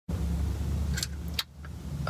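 Car engine idling with a steady low hum, heard from inside the cabin. Two sharp clicks come about a second in, and then the hum drops away abruptly.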